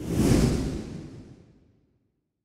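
Whoosh transition sound effect: one swell of noise that peaks within half a second and fades away over about a second and a half.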